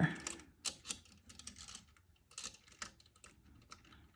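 Metal ball chain clicking and tapping against a hard work board as it is handled, a scatter of light, irregular clicks.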